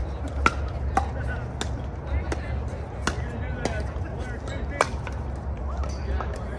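Pickleball paddles striking a plastic ball in a rally: a series of sharp pops, roughly one every half second to second, some fainter ones from neighbouring courts. Under them a low steady rumble and faint distant voices.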